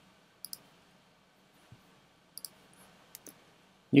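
A few faint, sparse clicks from a computer mouse and keyboard: single clicks about half a second in and near two seconds, then quick pairs a little later.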